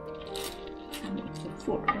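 Soft background music under a few light clicks and taps of wooden chopsticks packing meat filling down into an upright aluminium-foil tube.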